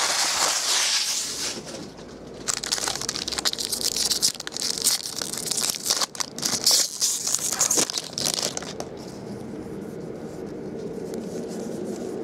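Foil wrapper of a 2012 Bowman Draft baseball card pack crinkling and tearing open as it is handled, in bursts. It goes quieter about three-quarters of the way through.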